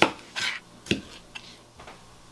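A chef's knife halving grape tomatoes on a plastic cutting mat: a few sharp taps of the blade striking the board, the loudest at the start and about a second in, with a short slicing swish between.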